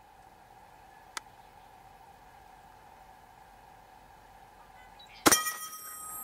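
A single 12-gauge shotgun shot about five seconds in, a sharp loud report firing a slug at about 2300 feet per second, followed by a lingering metallic ringing.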